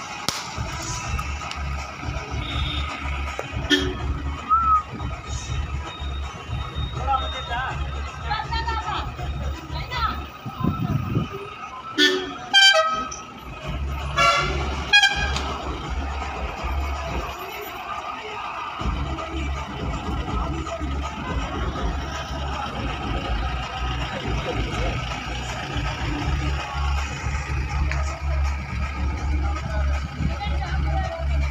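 A minibus horn sounds twice in quick succession near the middle, each blast about a second long, over a steady low rumble; voices and music are faint in the background.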